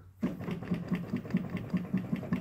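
Mechanical tracker action of a pipe organ clattering as keys are pressed: a quick, uneven run of clicks and knocks from the keys, trackers and levers.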